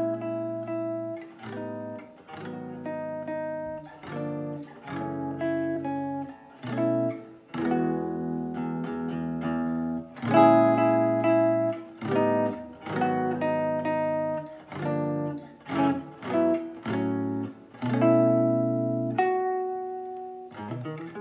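McCurdy Kenmare archtop electric guitar played solo through a small ZT Lunchbox amp in jazz chord-melody style: plucked chords with a melody line on top, each ringing out before the next.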